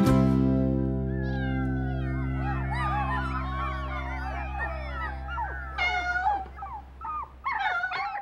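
The last chord of a song rings on and slowly fades. From about a second in, many overlapping high-pitched cries of young pets rise and fall over it, with a few short, separate cries near the end.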